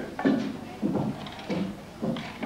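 A clog maker's hand tool cutting into a green-wood clog: three short scraping strokes, a little over half a second apart.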